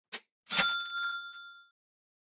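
A short click, then a bright bell-like ding that rings for about a second and fades: a chime sound effect added in the edit.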